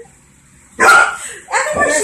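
A dog barking twice, loud and sudden, the first bark about a second in and the second just before the end. She is barking at a toy she wants that has been put out of reach.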